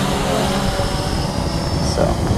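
Blade 350 QX quadcopter's electric motors and propellers heard from the GoPro mounted on it: a steady high whine over a heavy rumble of wind on the microphone, with a brief rising note near the end.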